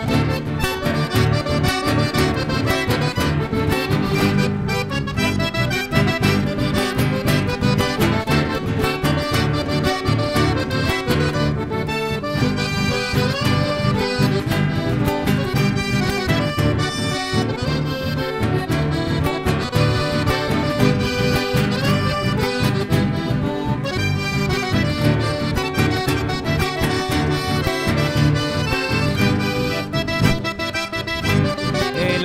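A chamamé played instrumentally by a folk group, with the accordion leading over acoustic guitars and a bass guitar in a steady dance rhythm.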